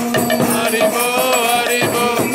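Devotional kirtan chanting: a voice sings a chant through a microphone over a mridanga drum and jingling percussion, with a steady held tone underneath.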